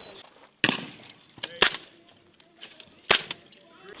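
Three sharp single gunshots, roughly a second or more apart, with a few fainter cracks between them.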